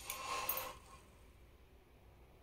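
Brief rustle and scrape of garments on hangers being handled, lasting under a second, then faint room tone.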